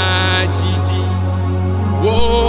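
A man singing gospel worship into a microphone over instrumental backing with a steady low bass note. His voice glides up into a high held note at the start and fades out after about half a second, leaving the backing.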